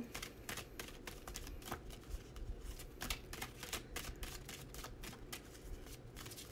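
A deck of oracle cards being shuffled by hand: a run of quick, irregular soft clicks and slaps as the cards are worked through.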